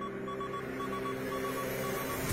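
Suspense music: a sustained low drone under a repeating pattern of short high beeps, swelling with a rising hiss near the end.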